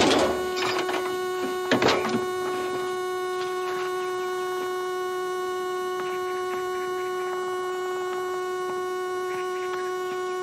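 A steady pitched tone, held unchanging throughout. Two short rushes of noise come at the start and again about two seconds in.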